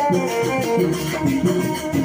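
Live traditional Indonesian dance music: a steady repeating low beat with a wavering melody line held over it.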